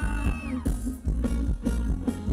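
Live band playing Thai ramwong dance music with deep bass. A held high note bends downward in the first half second, then quick, steady drum beats carry the rhythm.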